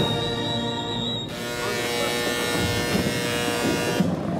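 Procession brass band holding a long sustained chord.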